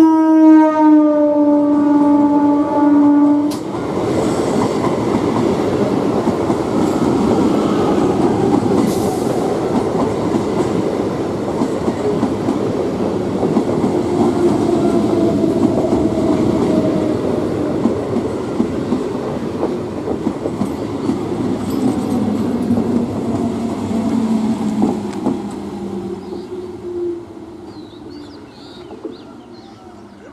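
Electric multiple unit (EMU) train giving one long horn blast of about three and a half seconds, slightly falling in pitch, as it approaches. Its coaches then pass at speed with wheels clattering over the rail joints, and the rumble fades away over the last few seconds.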